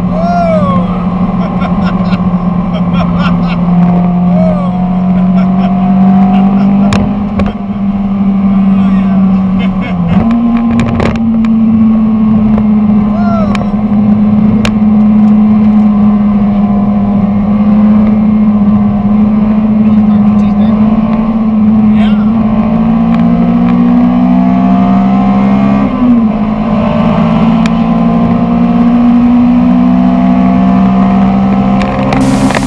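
Honda S2000's four-cylinder engine droning steadily at speed with the top down, its pitch stepping up about ten seconds in and shifting again near the end.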